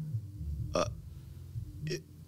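A man's low, wordless throat sound, acting out someone's speechless reaction, with two short sharp breath or mouth sounds, one near the middle and one at the end.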